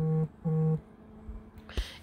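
Smartphone notification alert for incoming WhatsApp messages: two short, even, low buzzes in quick succession at the start.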